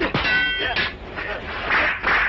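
A metallic clang of weapons clashing in a film fight, ringing for about half a second, then a rush of noise near the end.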